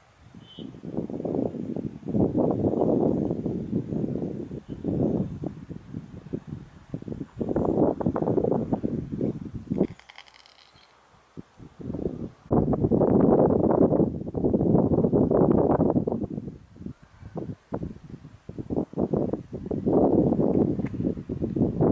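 Wind buffeting the microphone in irregular gusts, with a lull about halfway through and a brief high-pitched call during that lull.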